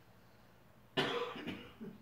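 A man coughs once, about a second in: a sudden, harsh burst that fades quickly, with a smaller follow-on sound after it.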